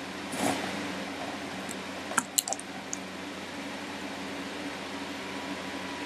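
Quiet room tone with a steady low hum, a soft rustle about half a second in, and a few faint small clicks a little past two seconds in.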